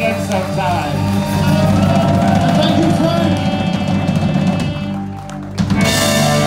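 Live band playing together: electric guitar, keyboards, saxophone and drum kit over held bass notes. About five seconds in the sound briefly drops back, then a sharp hit brings the full band back in.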